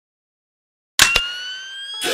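Electronic siren-like sound effect from a DJ battle mix: after a second of silence, two sharp hits, then a tone that rises slowly in pitch.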